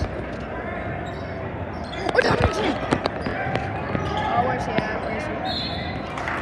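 Crowd voices and chatter echoing in a school gymnasium during a basketball game, with short knocks of the ball bouncing on the hardwood court. The crowd gets a little louder about two seconds in.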